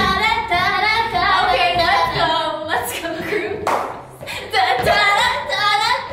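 Female voices singing a pop melody unaccompanied while dancing, in phrases that break off and start again, with a short noisy burst a little over halfway through.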